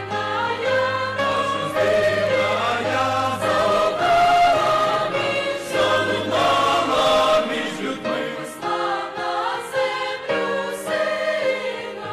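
A large church choir singing a Christmas hymn in sustained, slowly changing chords.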